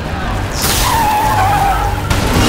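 Car tyres screeching on asphalt as a car skids to a stop. The squeal starts suddenly about half a second in and holds for over a second, sagging slightly in pitch, over a low rumble.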